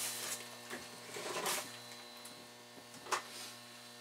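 Faint steady electrical mains hum, with a few soft rustles and a brief tap about three seconds in.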